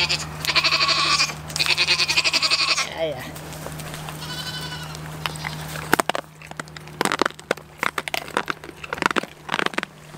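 Goats bleating: three long, wavering, high-pitched bleats in the first three seconds and a shorter one about five seconds in. After that comes a run of sharp clicks and crunches close to the microphone as the goats nibble from a hand.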